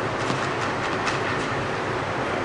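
Tennis ball bounced on an indoor hard court before a serve, faint taps about three a second, over a steady rushing hiss.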